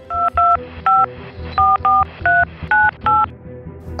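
Phone keypad touch tones (DTMF) as a number is dialled: eight short beeps, each two tones at once, at uneven spacing, over soft background music.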